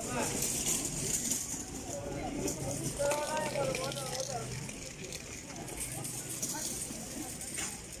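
Indistinct voices of people talking, with one voice standing out more clearly about three to four and a half seconds in, over a steady street murmur.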